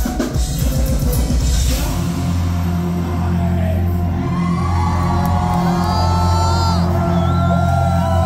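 Symphonic black metal band playing live, drums and distorted guitars pounding until about two seconds in, when the song stops on a low held note that rings on. The crowd whoops and cheers over the held note in the second half.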